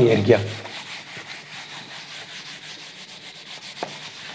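Whiteboard duster rubbing across a whiteboard, wiping off marker writing: a steady scratchy rubbing, with a short tick near the end.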